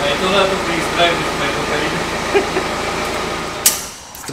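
Steady whirring air noise like a large fan or blower, with a sharp click shortly before the end.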